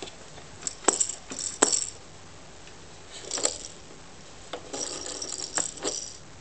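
Plastic baby activity toy clicking and rattling as its knobs, spinners and bead rattles are worked by hand: a few sharp clicks in the first two seconds, a short rattle a little past halfway, then a longer run of rattling near the end.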